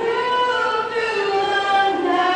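A teenage girl's solo voice singing a national anthem unaccompanied into a microphone, holding long notes that step slowly downward.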